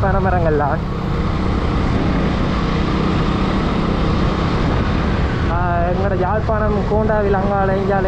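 Motorcycle running at road speed, its engine noise mixed with wind rush on the microphone. A voice is heard over it for the first second and again from about five and a half seconds in.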